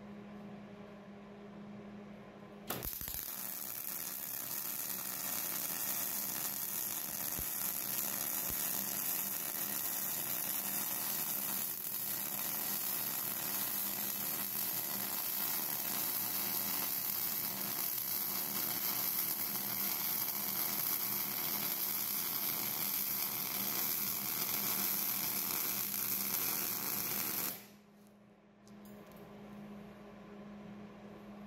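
MIG (GMAW) welding arc running on 0.035 ER70S-6 steel wire, laying one continuous bead on a steel post and base plate: a steady arc sound that starts abruptly about three seconds in and cuts off abruptly a couple of seconds before the end. A steady low hum is heard before and after the weld.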